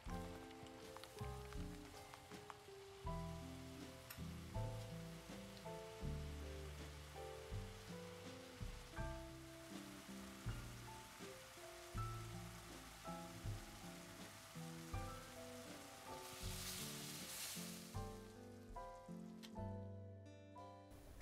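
Soft instrumental background music, with a faint sizzle of thick peanut satay sauce bubbling in a wok underneath. The sizzle swells briefly near the end.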